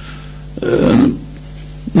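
A man's short, rough-voiced hesitation, "eh", about half a second long, set between two quiet pauses in his speech, over a steady low hum.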